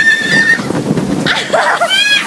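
Riders screaming on a water ride: one long, high, held shriek at the start, then several shorter shrieks that rise and fall near the end, over a rushing noise.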